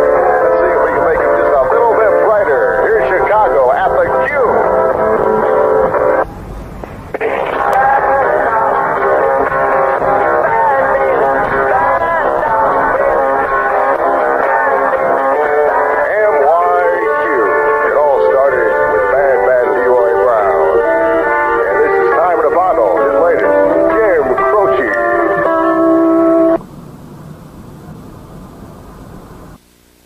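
A song with singing playing on a car radio, thin-sounding with no high end. It drops out for about a second around six seconds in, then cuts off suddenly a few seconds before the end, leaving only faint noise.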